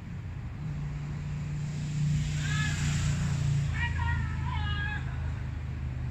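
Low engine drone of a passing road vehicle, its pitch dropping about halfway through. Distant shouted calls come over it twice, briefly near the middle and again a little later.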